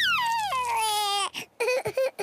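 Cartoon toddler piglet crying after a tumble: one long wail that falls in pitch, wavers near its end, and breaks off about halfway through, followed by a few short sounds.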